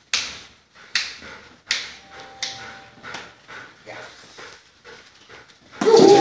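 A dog barking sharply, three loud barks in the first two seconds and then a few fainter ones, with echo from a bare hall. A brief whine follows about two seconds in.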